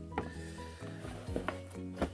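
Quiet background music with steady held notes, with a few light clicks and knocks as items are handled inside a cardboard box.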